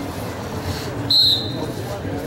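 A short, shrill whistle blast about a second in, typical of a referee's whistle stopping or restarting play. Spectators' voices murmur throughout.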